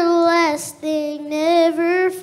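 A young boy singing a gospel song solo into a microphone. He holds one sung note, breaks off briefly about half a second in, then holds another note that wavers slightly in pitch.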